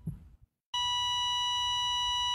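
Patient heart monitor flatline alarm: a single continuous high beep that starts just under a second in and holds steady, the signal that the heart has stopped.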